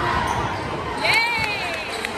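Basketball game in a gymnasium: a crowd chattering, a ball bouncing on the court, and a short, high squeal about a second in.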